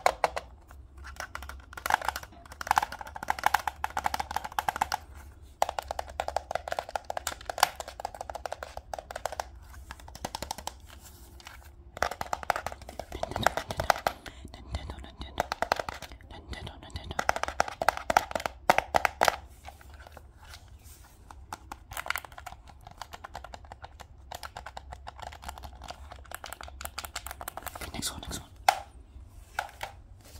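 Fingertips tapping, clicking and scratching on the plastic shell and buttons of a game controller, in irregular runs of sharp clicks and scratchy rubbing with short pauses.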